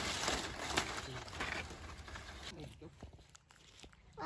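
Rustling and crackling of long green palm leaves and dry fronds as they are gathered up by hand, fading away over the first two and a half seconds.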